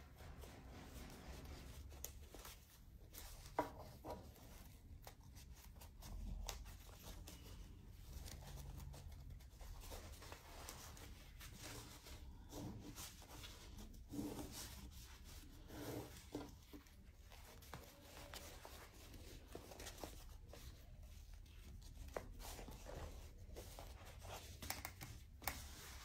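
Faint rustling and rubbing of fabric pieces being folded and handled, with scattered light taps and clicks.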